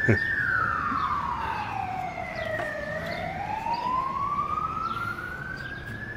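Emergency vehicle siren in a slow wail: its pitch falls for about three seconds, then rises again. A sharp knock comes right at the start.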